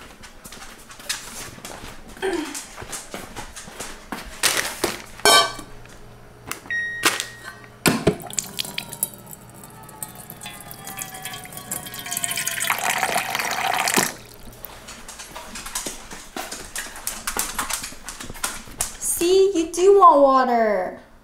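Clinks and knocks of a stainless steel dog bowl being handled, then a countertop water dispenser pouring a stream of water into the bowl for several seconds, with a ringing tone that slides as it fills.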